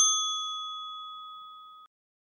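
A single bell-like ding sound effect, already ringing at the start on one clear pitch with fainter, higher overtones that die away first. It fades steadily and is cut off abruptly near the end.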